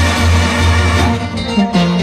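Live Sinaloan banda music played by brass, tuba and guitars. About a second in, the tuba's low line drops away and the guitars come to the front.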